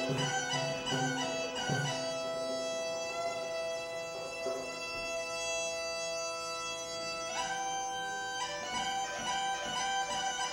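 Greek gaida (Thracian goatskin bagpipe) playing a melody over its steady drone. A drum keeps time for the first two seconds, then the gaida goes on alone in long held notes, shifting to a higher note for about a second near the end.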